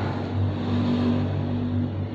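A steady low hum with one steady higher tone held above it through most of the pause.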